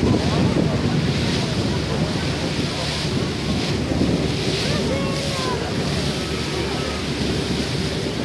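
Wind buffeting the microphone over the rush of a passenger ferry's wake splashing alongside the hull, with a steady low engine hum underneath.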